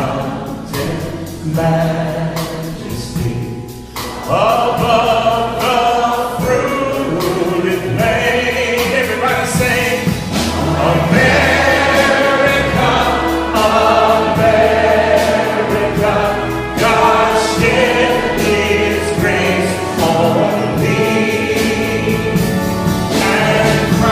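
Live pops orchestra with strings playing an arrangement of American patriotic songs, a male singer's voice carried over the orchestra.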